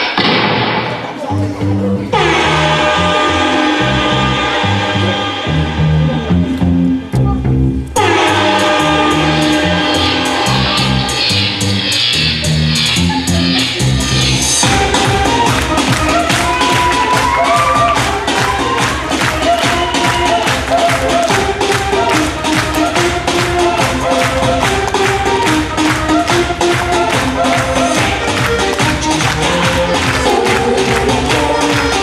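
Recorded pop dance music with vocals, played back for a dance routine. The music changes about two seconds in, dips briefly at about eight seconds, and from about halfway a steadier, denser beat takes over.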